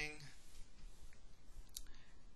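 A single short, sharp click near the end, over low background room noise.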